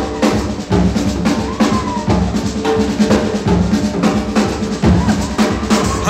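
Swing-jazz drum kit break: snare, bass drum and rim shots played in a busy, driving rhythm.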